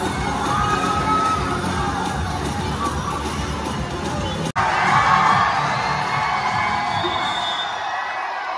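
A large crowd of students cheering and shouting, with music underneath in the first half. After a brief break about halfway, the cheering comes back louder.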